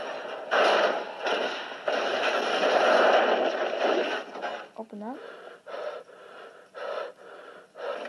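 A loud noisy rush for about four seconds, then a short rising whoop of a voice and quick gasping, wheezing breaths, about two a second, to the end.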